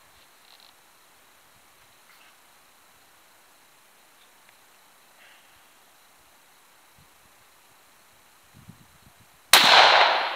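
A single shot from a Ruger M77 Gunsite Scout rifle in .308, firing a 180-grain round, near the end after a long quiet stretch; the report trails off over the next half second or so.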